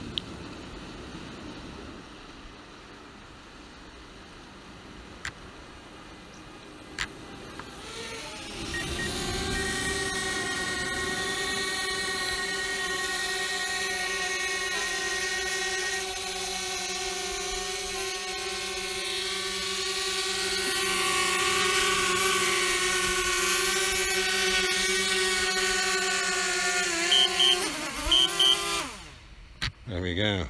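DJI Spark quadcopter's propellers humming at a steady high pitch as it flies in and hovers close by while returning home to land. Near the end there are a few short beeps, then the motors wind down and stop as it touches down.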